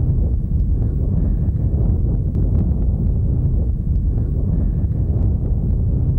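Deep, steady rumble of an atomic bomb explosion, heavy in the low end, with a few faint clicks over it.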